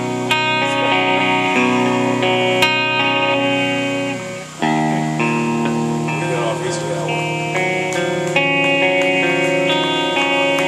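Electric guitar playing held, ringing chords that change every second or so; about four and a half seconds in it briefly fades and then comes back suddenly on a new, lower chord.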